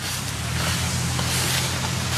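An engine running steadily with a low, even hum, under a rushing noise.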